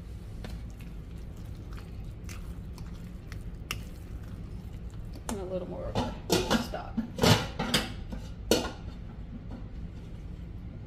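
A spoon stirring moist cornbread dressing in a ceramic bowl, folding in chopped green onion and bell pepper. It begins with a few soft clicks, then a run of louder scrapes and knocks against the bowl from about five seconds in to near the end.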